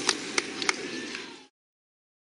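Outdoor roadside ambience with a few sharp clicks, fading out to silence about one and a half seconds in.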